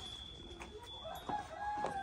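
A rooster crowing once, starting about a second in: one long call that holds its pitch and then drops away at the end. A few light knocks sound underneath.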